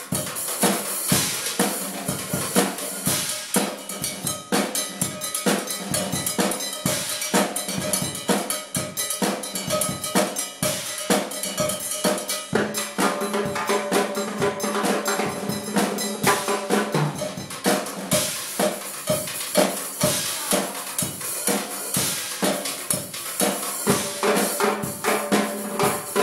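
A drum kit and a pair of timbales played together with sticks in a steady, dense groove: bass drum, snare and cymbals under sharp metallic timbale strikes.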